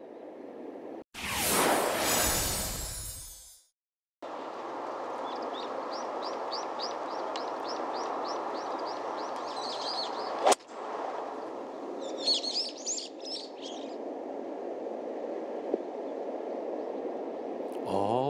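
Birds chirping in short repeated runs over a steady outdoor hush, with one sharp click of a golf club striking the ball about ten seconds in. Near the start, a loud rushing whoosh rises and fades over about two seconds.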